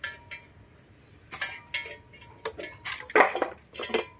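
Metal pole and round base of a standing electric fan being handled, giving scattered light metallic clinks and knocks, about eight in four seconds, some ringing briefly.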